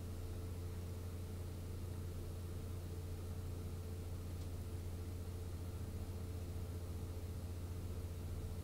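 Quiet room tone: a steady low hum with a faint hiss, unchanging throughout.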